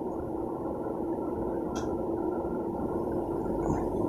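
Steady low background noise, with one faint click a little under two seconds in.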